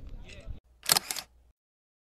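Camera shutter click, a quick double snap about a second in, over faint voices.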